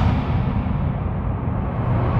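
Deep, steady low rumble of a cinematic boom-and-rumble sound effect, its upper hiss fading out within the first second or so.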